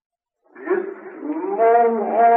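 Quran recitation by a man: after silence his voice begins about half a second in, then slides upward into a long, held chanted note. The recording is old and narrow in sound, with little above the middle range.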